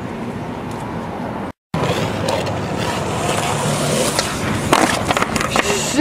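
Skateboard wheels rolling on rough concrete, steady and hissing, broken by a brief gap about a second and a half in. Near the end come a few sharp clacks of the board.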